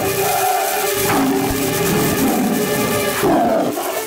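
A cartoon tiger's roars and snarls, several in a row, over background music.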